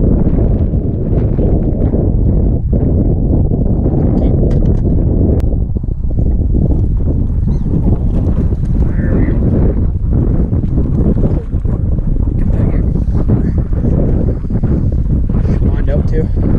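Strong wind buffeting the microphone over choppy open water, a loud steady low rumble with no let-up.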